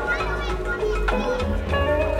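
A DJ set of electronic music played loud through an outdoor PA, with a deep pulsing bass and pitched synth or vocal lines over it.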